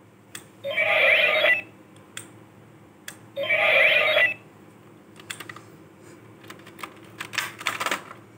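DX Ixa Driver toy belt playing a ringing electronic sound effect from its small speaker twice, each about a second long. Then a run of sharp plastic clicks and rattling, densest near the end, as the Ixa Knuckle is handled and pulled off the belt.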